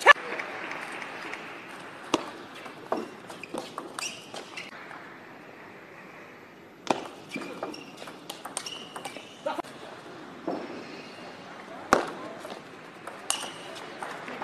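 Table tennis rallies: sharp clicks of the ball off the rackets and the table, up to a few a second, the loudest right at the start, with a lull of about two seconds midway between points.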